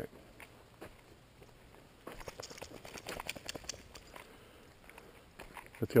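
Light crackling and crunching of footsteps in dry leaves and grass at the edge of a gravel road, heard as a close run of small clicks lasting about two seconds midway.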